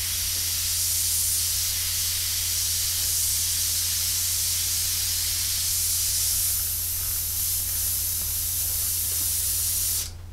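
Harder & Steenbeck Evolution AL plus airbrush with a 0.2 mm needle, spraying acrylic paint straight from the bottle: a steady hiss of air and atomised paint.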